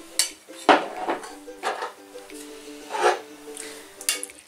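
Metal spoon clinking and scraping against a ceramic bowl and a glass baking dish as sauce is spooned out: a handful of sharp clinks, the loudest about a second in and again near three seconds. Background music runs underneath.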